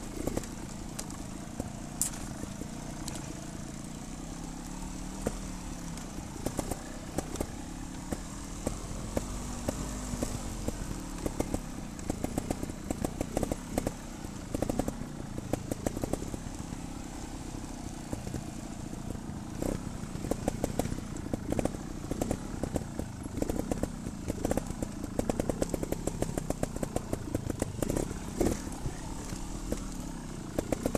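Trials motorcycle engine running at low revs down a steep descent, with the bike rattling and clattering over rocks and roots in many quick knocks that grow more frequent in the second half.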